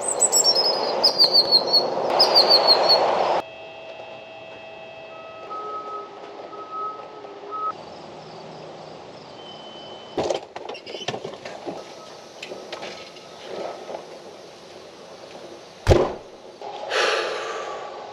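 Birds chirping repeatedly over a loud steady rushing noise that cuts off suddenly about three seconds in. Then a quieter outdoor background with faint steady tones, a sharp knock about ten seconds in and a louder one near the end.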